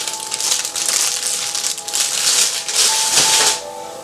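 Plastic wrap on a roll of deco mesh rustling and crinkling in quick bursts as the roll is handled, dying away near the end.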